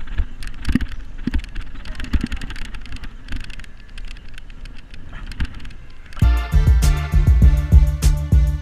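Low wind rumble with irregular clicks and knocks on a fishing boat's deck while a hooked fish is fought. About six seconds in, background music with a steady beat starts suddenly.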